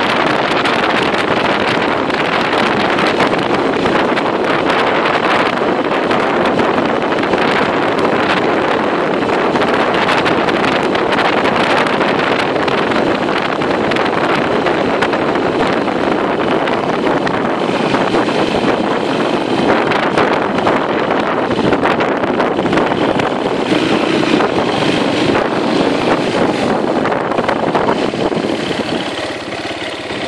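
Small motorcycle engine running at riding speed, mixed with heavy wind noise on the microphone. The sound eases off a little near the end.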